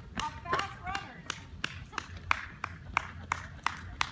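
Steady hand clapping, about three claps a second, cheering on runners.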